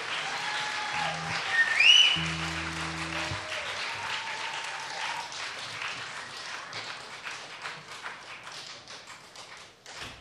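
Live club audience applauding and cheering between songs, with a whoop about two seconds in and two short low held notes from an instrument on stage. The clapping thins to a few scattered claps near the end.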